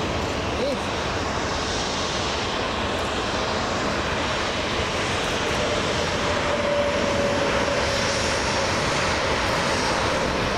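Rolls-Royce Trent XWB jet engines of an Airbus A350 taxiing past: a steady rushing roar with a faint steady whine, swelling slightly in the second half.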